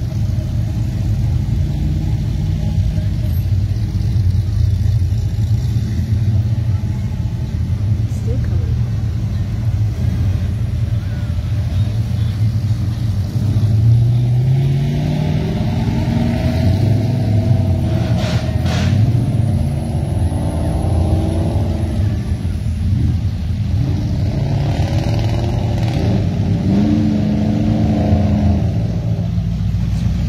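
Classic Holden sedans driving slowly past one after another, their engines giving a steady low rumble. About halfway through, one engine revs up, rising in pitch.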